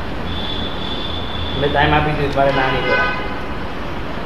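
A voice speaking briefly in the middle, over a steady low hum and a thin, steady high-pitched whine on the lecture recording.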